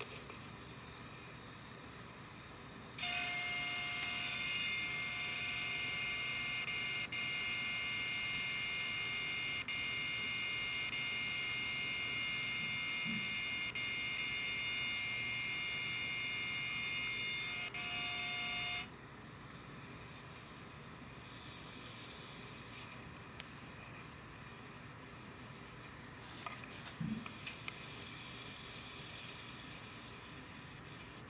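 A loud, steady pitched tone of several notes together, held for about sixteen seconds, starting and cutting off abruptly, heard as playback through a computer speaker. A few faint clicks follow near the end.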